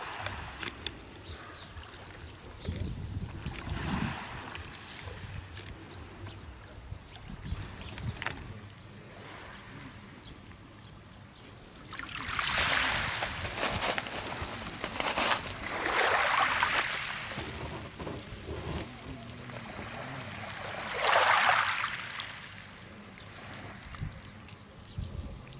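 Small sea waves washing over a pebble beach, three surges of hissing water over the stones in the second half. Before them, wind rumbles on the microphone.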